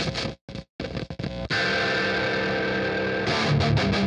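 Distorted electric guitar riff playing back from a DAW, its tone built with Logic's stock amp and effects plugins. It opens with short choppy stabs, then a held ringing chord, with chugging low notes coming in near the end.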